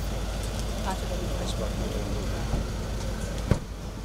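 A vehicle engine idling with faint voices around it, then a car door shutting with a single sharp thud about three and a half seconds in.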